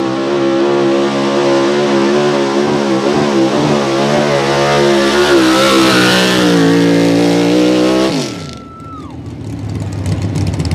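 Outlaw 4x4 Ford pickup's unlimited-cubic-inch engine running at full throttle under the load of a pulling sled, its pitch wavering as it pulls. About eight seconds in the throttle is cut and the engine note falls away quickly, with a thin whine dropping off with it, as the pull ends. The engine then runs low and rough.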